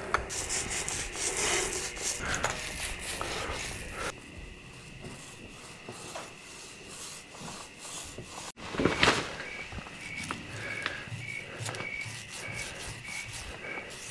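Foam paint roller rolling wet paint across a sheet-metal bulldozer fender: a soft, uneven rubbing swish, stroke after stroke. A louder knock comes about nine seconds in.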